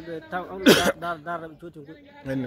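A man talking in short phrases. A little under a second in, one short, loud throat-clearing breaks in.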